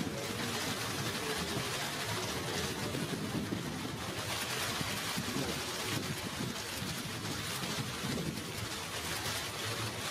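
Many press camera shutters clicking rapidly and continuously, the clicks overlapping into a steady rain-like patter, with a low murmur of the room underneath.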